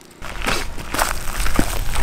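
Footsteps crunching over dry leaf litter and twigs: a string of irregular crunches and crackles.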